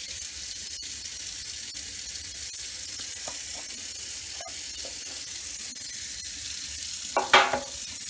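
Steady high-pitched hiss throughout, with a few faint ticks. Near the end comes a short, louder pitched vocal sound.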